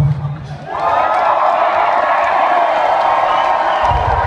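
Large concert crowd cheering, whooping and screaming, swelling about a second in as the music's beat drops out, and holding loud and steady.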